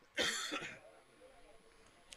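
A man clearing his throat once, in a short burst of about half a second.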